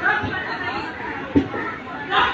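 Background chatter of several people talking at once, indistinct, with a single thump a little past halfway.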